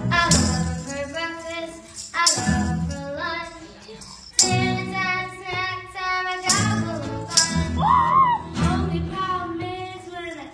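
Girls singing a Hanukkah song about sufganiyot into a microphone, with a sharp percussive stroke, like a tambourine shake or strum, about every two seconds.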